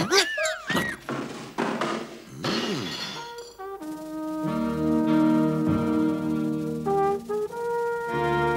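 Cartoon sound effects: sliding whistle-like pitch glides and a couple of short knocks. Then, from about four seconds in, brass instruments play long sustained chords.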